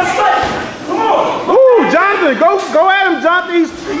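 A man's voice making a quick run of short wordless calls, each rising and falling in pitch, about three a second, from about a second and a half in.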